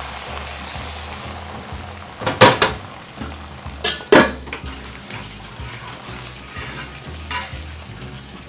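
Beaten egg sizzling in a hot black iron pan, a steady frying hiss. Two loud clanks from the pan's heavy iron lid come about two and a half and four seconds in.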